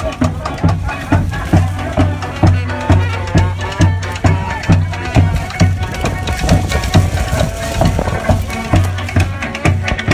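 A live marching street band playing: sousaphone, drums, horns and a fiddle over a steady low beat of about two pulses a second.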